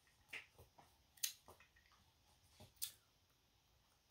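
Near silence: room tone with three or four faint, brief clicks.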